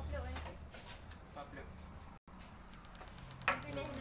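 Faint, intermittent talking over a low steady hum, the audio cutting out for an instant about halfway through.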